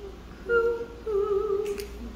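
A woman's voice singing two held notes: a short one about half a second in, then a slightly lower, longer one with vibrato.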